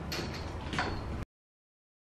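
A cordless stick vacuum cleaner running on a wood floor, a steady hum with a thin high whine and a couple of knocks, cutting off abruptly about a second in.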